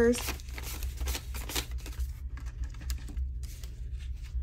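Paper dollar bills rustling and crinkling as they are counted out by hand, in a string of short, irregular paper sounds.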